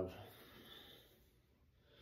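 A man's faint, hard breath out about half a second in, winded from a set of push-ups.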